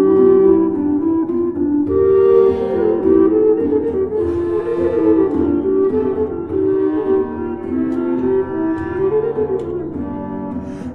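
Renaissance polyphonic instrumental music: several woodwind lines with a flute-like sound interweave in steady, stepwise notes.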